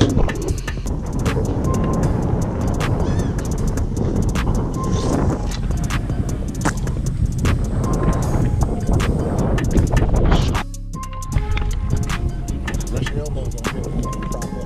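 Background music with a steady beat, its level dropping abruptly about ten and a half seconds in.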